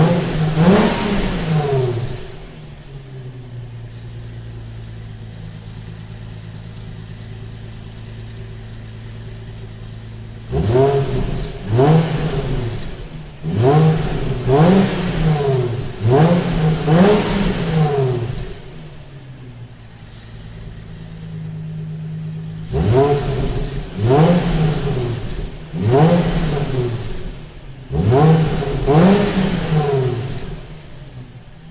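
2004 Infiniti G35's 3.5-litre V6 on its stock exhaust, revved in quick throttle blips about once a second, each rising and falling, with stretches of steady idle between the runs of revs. It is heard from beside the tailpipes in a concrete parking garage.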